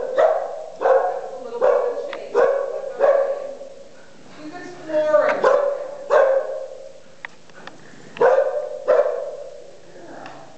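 A bearded collie barking at sheep: sharp, loud barks in quick runs, about one every 0.7 s at first, then a pause and a few more later.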